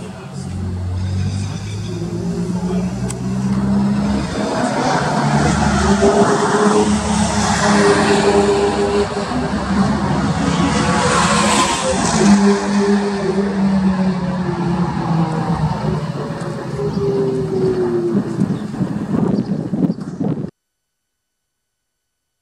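Lotus Exige sports car's engine running past on a race track, its note climbing and falling, loudest about eleven to twelve seconds in. The sound cuts off abruptly near the end.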